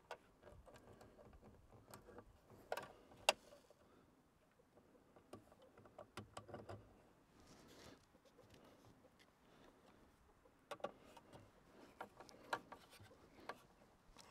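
Faint, scattered small clicks and taps from working red and black cables into the screw terminals of a solar charge controller.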